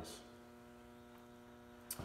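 Steady low electrical hum with a faint click just before the end.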